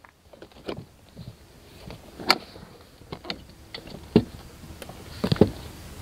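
Glide 'n Go XR power lift seat being folded down for stowing: a handful of separate clicks and knocks from its parts, the loudest about two seconds in and a quick pair near the end.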